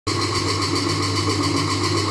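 Commercial wet grinder for biri (black gram) and rice, belt-driven by an electric motor, running steadily with a deep hum while grinding soaked biri into batter.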